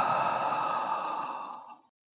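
A woman's long, slow sigh out through the mouth, a steady breathy exhale that fades away and stops shortly before the end.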